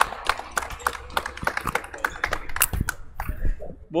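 Scattered hand claps from a small group of people, irregular and overlapping, dying out about three seconds in.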